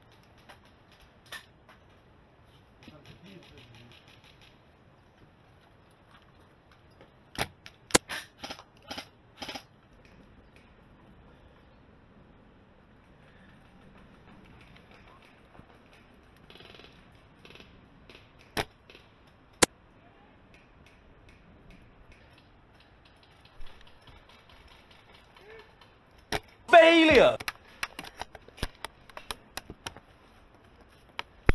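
Scattered sharp clicks, with a quick run of about six of them about a third of the way in, then a loud shout with a bending, falling pitch near the end.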